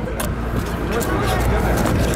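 Wind rumbling on the microphone, with voices in the background and a few clicks of cardboard being handled near the start.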